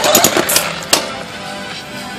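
Hilti electric demolition hammer pounding into a concrete slab, breaking it up, loudest with sharp impacts in the first second and then running steadier and quieter.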